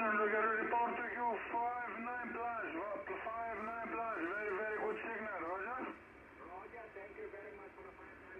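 Amateur-radio voice on single-sideband from the Yaesu FRG-7700 receiver's loudspeaker, thin and cut off above the speech range, with the words not clear. About six seconds in it drops to weaker, fainter voices.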